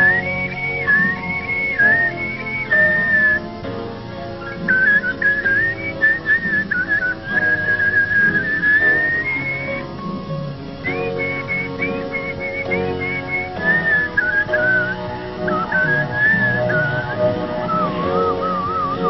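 A man whistling a song melody over instrumental accompaniment, with some long held notes. Near the end the whistle drops lower into a quick warbling trill.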